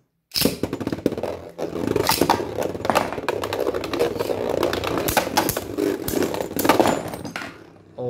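Two Beyblade Burst spinning tops launched into a plastic stadium, whirring and clashing with many sharp clicks and knocks. The clatter dies away near the end, when one top is left spinning alone.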